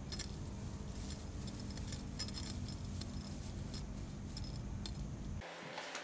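Small metal tag on a Yorkshire terrier's collar jingling irregularly as the dog noses about, over a low wind rumble on the microphone. Near the end both cut off suddenly and give way to quieter room sound.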